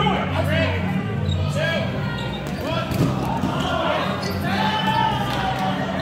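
Rubber dodgeballs bouncing and thudding on a hardwood gym floor amid players' shouting, with a sharp ball impact about three seconds in.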